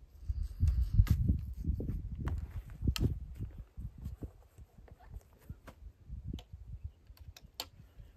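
Handling sounds from loading a .45 caliber muzzleloading rifle: scattered sharp clicks and knocks among low thumps and rumbles, busiest in the first three seconds and sparser afterwards.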